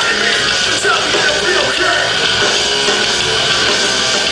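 Hardcore band playing live at full volume through a club PA, recorded from within the crowd: a dense, continuous wall of band sound.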